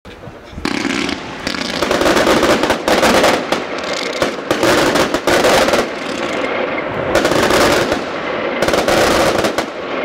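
A Lesli 7 Gulag fireworks battery (cake) firing its 100 shots as a fast, dense string of launches and bursts. It starts about half a second in and goes on almost without a break.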